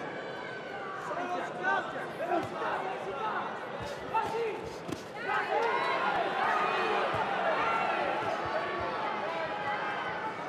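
Boxing arena crowd shouting and cheering, growing louder and denser from about halfway, with scattered short thuds from the ring.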